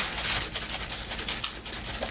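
Plastic spice shaker shaken in quick strokes, the dry seasoning rattling inside and pattering onto diced raw potatoes in an aluminium foil pan as a rapid, uneven run of small ticks.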